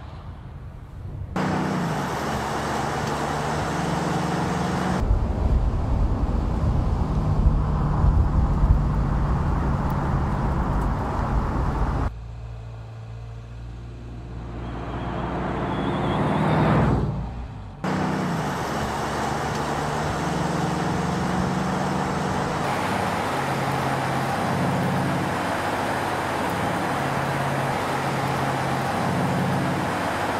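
Mercedes E63 AMG's V8 engine running at speed, heard in short edited stretches that cut in and out abruptly. There is a heavy low rumble for several seconds near the start, and later a car approaching that grows louder and cuts off suddenly.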